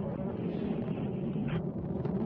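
Soyuz rocket's first stage, four strap-on boosters and the core engine, burning during ascent, heard as a steady low rumble.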